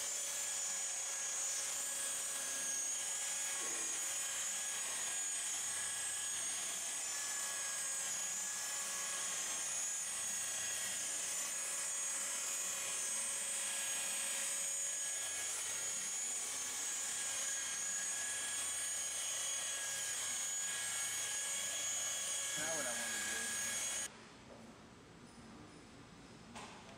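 Corded rotary polisher with a foam pad buffing car paint to remove overspray, its motor running with a steady high whine. It cuts off suddenly about two seconds before the end.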